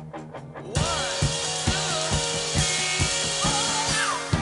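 Live rock band: an electric guitar picking a fast repeated riff, then under a second in the whole band comes in loud, with drums and cymbals keeping a steady driving beat, bass, and wavering high notes over the top.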